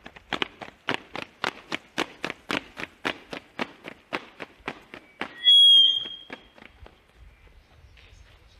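Ceremonial police squad's boots striking asphalt as they march in step, sharp regular footfalls about four a second that stop about five seconds in. Just after, a short, loud, high-pitched squeal sounds once.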